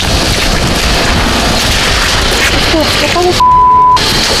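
A loud, even rushing noise with faint voices in it, cut off near the end by a steady high-pitched censor bleep, about half a second long, over a spoken word.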